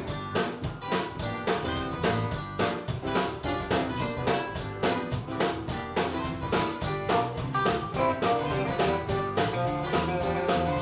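Live band playing instrumental music: electric guitar, bass and drum kit keeping a steady beat of a few strikes a second.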